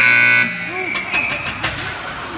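Rink horn sounding loudly for about half a second, then a thinner, quieter high tone lasting about a second, over the voices of spectators.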